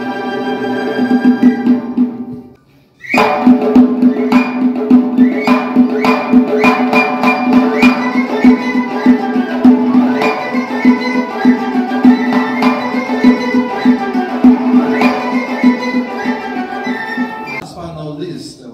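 Uyghur folk ensemble playing: a side-blown flute holds a long note, the music breaks off briefly about three seconds in, then the full ensemble comes in with the flute melody over regular frame-drum beats and plucked long-necked lutes. The music stops just before the end.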